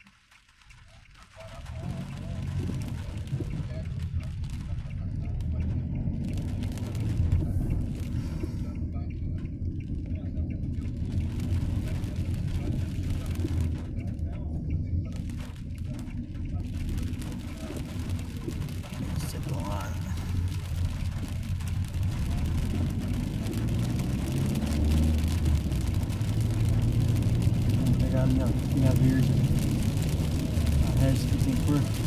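Inside a moving car in the rain: steady low engine and tyre rumble on a wet road, with a hiss of rain and spray that fills out and grows stronger in the second half. The sound comes in after about a second and a half of near silence.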